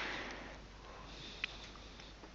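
A short intake of breath close to a headset microphone at the start, fading within about half a second, then faint room noise with one small click about one and a half seconds in.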